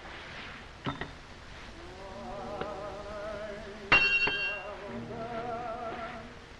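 Metal spurs clinking as they are taken off: a short clink about a second in and a louder, ringing clink about four seconds in, over soft music with a wavering melody.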